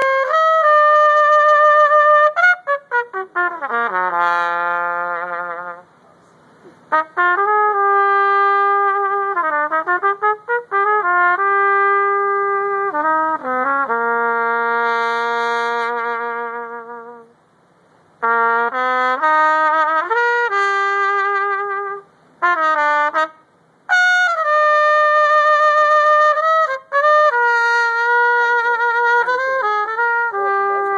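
Solo trumpet played unaccompanied in phrases of long held notes. Early on there is a quick run down into the low register, with short breaks between phrases and a wavering vibrato on the held notes near the end.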